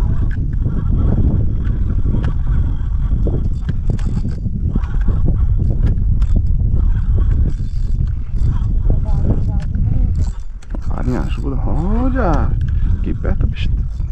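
Steady low rumble of a small wooden boat under way on a river, with a person's voice rising and falling briefly about eleven seconds in.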